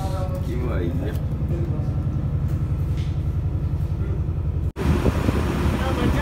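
Fishing boat engine running steadily, a low fast chugging, cut off abruptly near the end and followed by busier quayside noise with voices.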